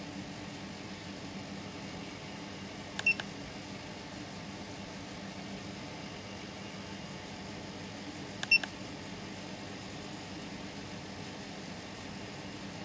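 Two short beeps, about five seconds apart, from a handheld Foxwell OBD2 scanner as its keys are pressed to erase stored fault codes, over a faint steady hum.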